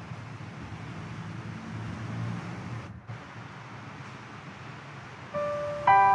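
Low, steady background rumble of a large church, with a brief dropout about halfway. Near the end a keyboard begins playing sustained notes, the start of the communion music.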